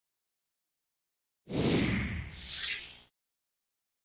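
A whoosh sound effect in an animated transition, about a second and a half long, with a low rumble under a hissing sweep that dips and then rises, cutting off suddenly.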